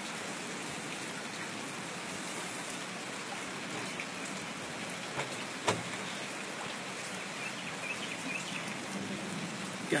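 Steady rain falling, an even, constant hiss, with a single short click a little past halfway.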